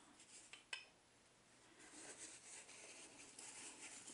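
Near silence, with a faint tick under a second in, then faint soft rubbing from about halfway: a tissue wiping ink off a clear stamp on an acrylic block.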